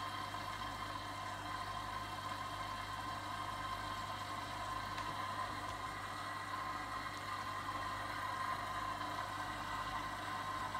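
AEG Lavamat Protex washing machine running a cold jeans wash: a steady motor hum with a constant higher whine over it, which came on suddenly just before.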